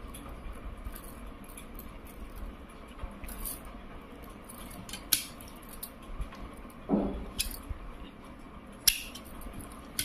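Scissors snipping off the excess thread and fabric of a finished potli button, a few short sharp clicks, with glass bangles clinking lightly on the wrists.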